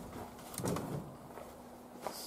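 A dove cooing once: a short, low, soft call about half a second in.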